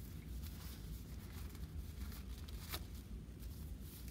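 Clean exam gloves being pulled onto the hands: faint rustling of the glove material, with a sharp little click late on.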